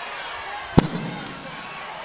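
A single sharp bang about a second in, followed by a short low boom, over the steady murmur of an arena crowd.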